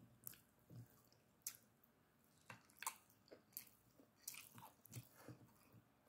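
Close-up eating sounds of a person chewing a mouthful of rice and curry: faint, irregular wet clicks and smacks, roughly two a second, mixed with the soft squish of fingers pressing rice on the plate.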